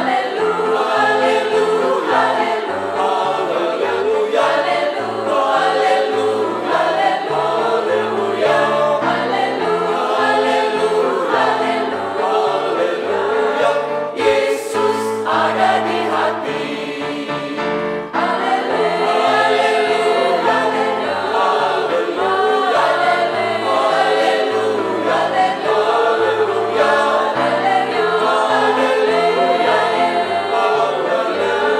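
Mixed choir of women's and men's voices singing a hymn in Indonesian in several parts, with low notes stepping underneath; the singing dips briefly about 18 seconds in and carries straight on.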